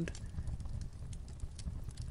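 A pause between spoken sentences: low microphone room rumble with a few faint, irregular clicks.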